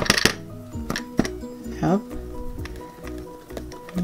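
Light background music with a few sharp taps of a plastic toy hammer pounding Play-Doh flat against a cardboard play mat.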